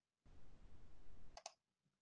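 A brief, faint double click about a second and a half in, over faint low room noise.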